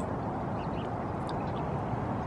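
Steady low outdoor background rumble with no voice, with a few faint, short high chirps about half a second and a second and a half in.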